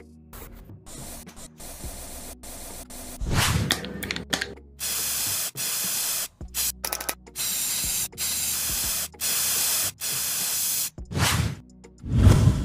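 Aerosol spray-paint can sprayed in a run of about seven short bursts of hiss, each under a second, starting about five seconds in.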